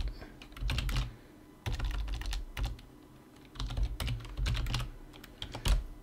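Typing on a computer keyboard in four short bursts of keystrokes with brief pauses between them.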